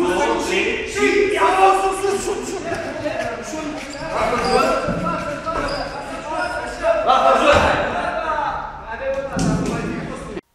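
Several men's voices calling out and talking over one another while they lift a heavy grand piano together, with dull thuds from the piano and their feet as it is hauled over a step.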